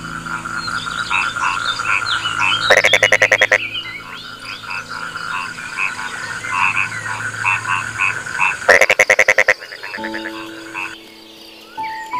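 A chorus of frogs calling: many short chirping calls over a steady high trill, broken twice by a loud croak made of a rapid train of pulses, under a second long, about three seconds in and again about nine seconds in. Soft piano notes come in during the last two seconds.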